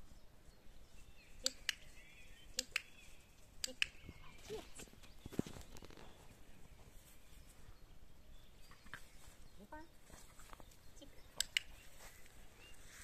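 A handheld dog-training clicker clicking in quick double clicks, four times (three close together early, one near the end), marking the puppy's behaviour for a food reward.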